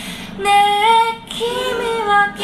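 A woman singing a slow ballad over her own acoustic guitar, two sung phrases with held notes and a short break for breath between them.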